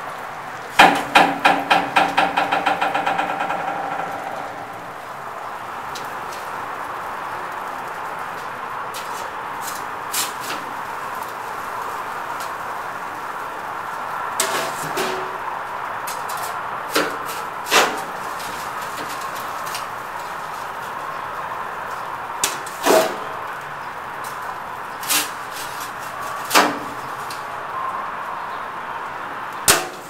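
Heavy steel door of a big barrel smoker banging open about a second in, then rattling and ringing as it settles over about three seconds. After that come scattered sharp metal clanks and scrapes as a long-handled steel pizza paddle works inside the smoker.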